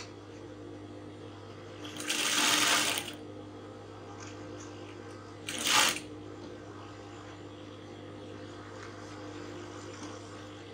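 Sewing machine stitching a seam through fabric panels backed with stay: a steady hum, broken by a run of stitching about two seconds in that lasts about a second and a shorter run just before six seconds.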